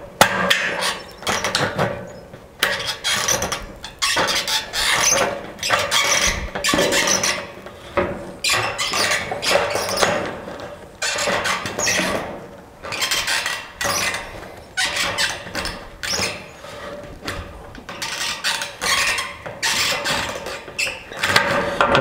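Hand tin snips cutting across sheet-metal eave flashing, snip after snip at roughly one a second, each closing of the jaws giving a short, harsh metallic crunch and squeal.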